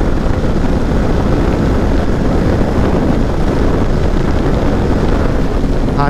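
Wind buffeting the microphone over the steady rush of a Yamaha MT-15 motorcycle cruising at highway speed. It is a loud, even, low noise in which no distinct engine note stands out.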